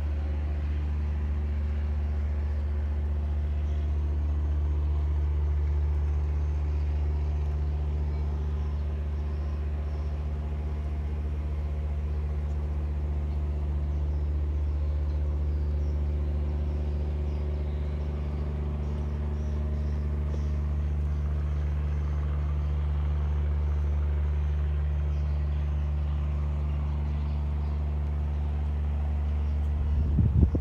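A steady, low mechanical hum, like a motor or engine running, unchanging throughout.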